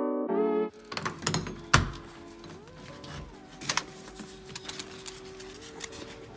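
Background music: loud stacked notes that drop off suddenly under a second in, leaving quieter held tones. Scattered sharp clicks and knocks run under it, the loudest about two seconds in.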